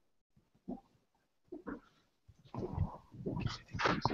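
A young girl's voice speaking faintly into a microphone over a video-call link: a few brief sounds at first, then steady talk through the second half.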